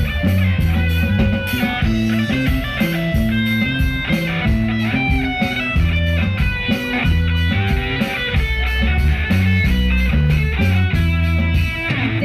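Band playing live, instrumental: guitar melody over a moving bass line, with drums and cymbals keeping a steady beat.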